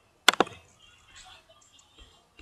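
A computer mouse button clicked once, a sharp press-and-release pair of clicks about a quarter second in.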